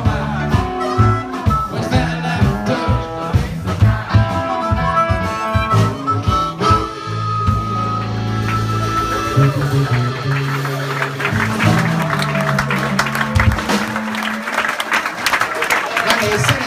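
Live blues band of electric guitar, bass guitar, drums and harmonica playing the close of a song: a driving beat, then a final chord held and ringing for several seconds. Audience applause rises over the last ringing notes near the end.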